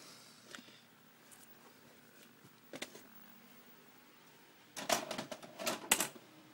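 Faint room tone with a few soft clicks, then a burst of sharp plastic clicks and clatter near the end as a VCR and a VHS cassette are handled.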